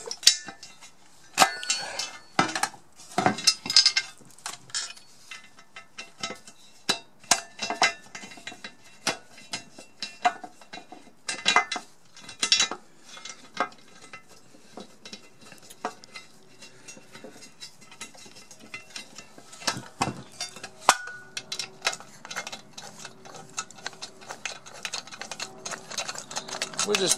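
Irregular small knocks and metallic clinks as screws are handled and fitted by hand into the underside of a KitchenAid stand mixer's cast metal housing, fastening the upright to its base. A faint steady hum runs under the second half.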